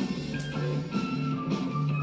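Background music from a television game show's animated clue, with low notes held steadily.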